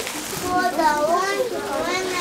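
Speech only: a child's high voice reciting a verse, with other children's voices around.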